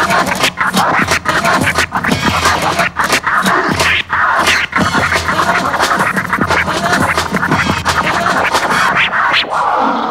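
Vinyl scratching on Technics turntables: a record pushed back and forth by hand while the mixer's fader chops it into rapid stuttering cuts, layered over music.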